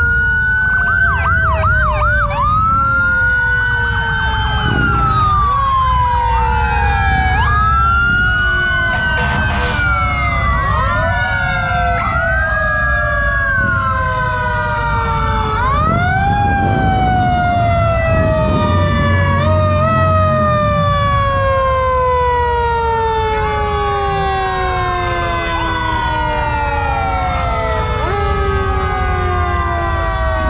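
Several fire truck sirens sounding at once, loud and overlapping: quick rising whoops and long, slow falling wails, over the low rumble of the passing trucks' engines.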